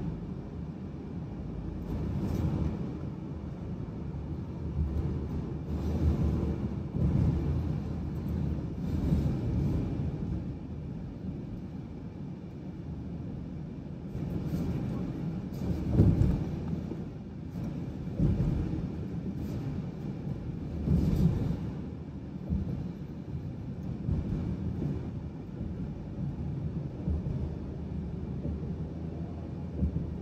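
Highway road noise heard from inside a moving car's cabin: a steady low rumble of tyres and engine that swells and eases every few seconds, with one louder thump about sixteen seconds in.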